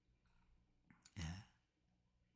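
A man's short sigh about a second in, otherwise near silence.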